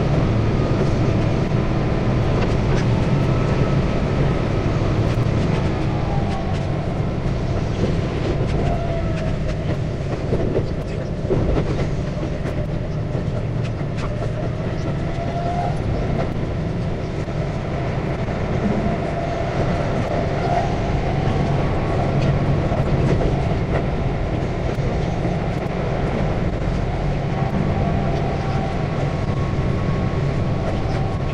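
Keihan 8000 series electric train running, heard from inside its front car: a steady rumble of wheels on rail with faint whining tones that drift slowly up and down in pitch, and an occasional click.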